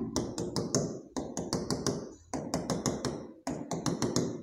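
A pen tapping quickly on an interactive display board as short dots are marked one after another: sharp taps several a second, in short runs with brief pauses between.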